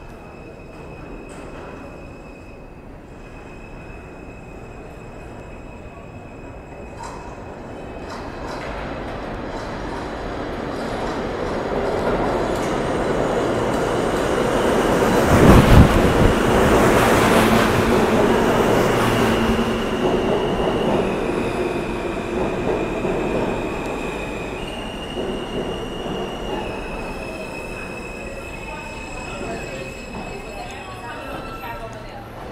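R160A subway train arriving at a station platform: its rumble builds as it approaches and is loudest as it runs past about halfway through. It then eases off as the train brakes, with a high whine that steps down in pitch several times as it slows to a stop.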